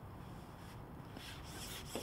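Faint rubbing and scraping of a long carbon fishing pole being lifted and drawn back by hand, the scuffs coming more often in the second half, over a low steady rumble.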